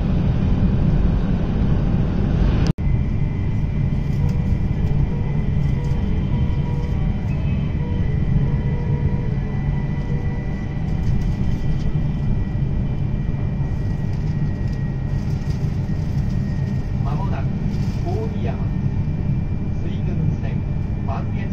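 Steady low rumble of a Tohoku Shinkansen train running at high speed, heard inside the passenger cabin. The sound cuts off abruptly for an instant about three seconds in, then carries on unchanged.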